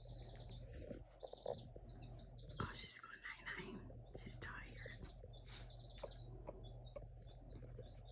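Baby chicken chicks peeping: faint, short high peeps repeated a few times a second, with soft whispering a few seconds in.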